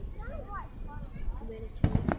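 Aerial firework shells bursting: a short spoken exclamation early on, then a sharp firework bang near the end as a large bright shell explodes.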